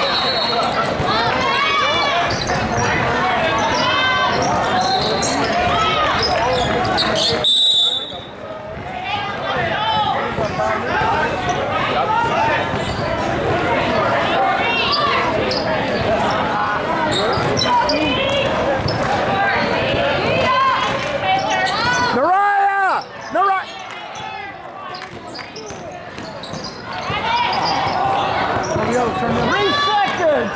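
Basketball game sound in a large hall: a ball bouncing on the court, sneakers squeaking and many overlapping voices from players and spectators. A short, high referee's whistle blast comes about seven seconds in, and a loud shout about two-thirds of the way through.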